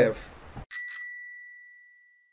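A bell-like ding sound effect: two quick rings that ring out on one clear high tone and fade away over about a second. Just before it, the speaking voice cuts off abruptly to dead silence.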